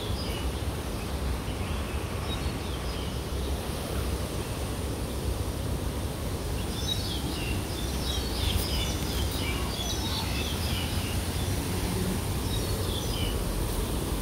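Outdoor ambient noise, a steady low rumble, with birds chirping now and then, most busily in the middle of the stretch.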